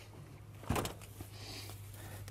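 A door being pulled shut: one sharp knock a little under a second in, then a faint click.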